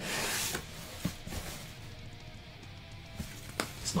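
Cardboard box flaps scraping briefly as they are pulled open, followed by a couple of light knocks, over faint background music.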